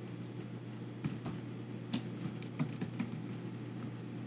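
Computer keyboard typing: irregular keystrokes, a few clicks a second, as a line of code is typed.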